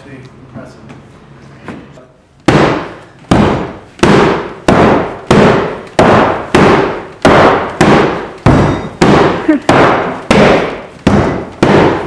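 A hammer beating hard and repeatedly on a taut ballistic nylon boat skin stretched over a wooden frame, starting a couple of seconds in, about three blows every two seconds. Each blow is a sharp hit that rings briefly and dies away, and the skin holds.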